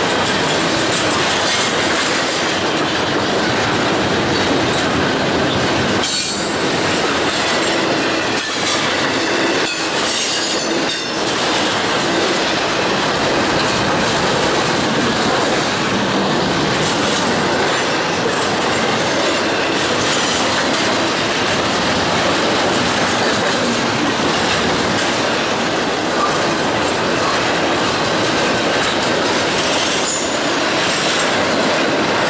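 CSX double-stack intermodal train's container well cars rolling past at close range: a steady, loud din of steel wheels on the rails, with a run of sharper clacks between about six and eleven seconds in.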